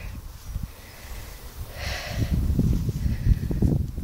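Low, uneven rumbling on a phone's microphone as it is carried and swung about while walking, growing louder in the second half, with one short breath about two seconds in.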